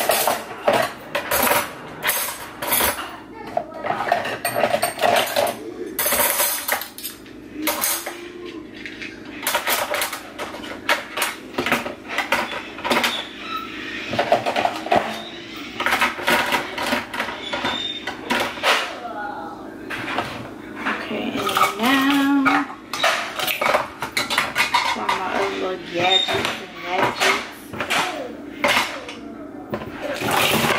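Metal cutlery and kitchen utensils clinking and clattering as they are handled and laid into a plastic cutlery tray in a drawer: many short, irregular clinks and knocks.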